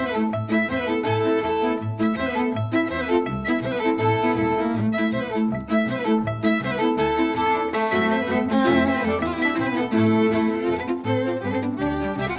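Violins and a double bass playing a lively folk dance tune, the fiddles carrying the melody over a steady beat from the bass. It is a polka medley built on Slovak, Romanian and Moldovan melodies.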